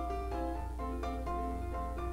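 Background music: a light melody of short, quickly stepping notes on a piano-like keyboard instrument, over a steady low hum.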